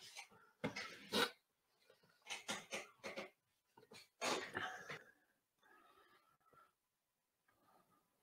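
A man's faint, short breaths and sighs, several in the first five seconds, from tense, nervous waiting.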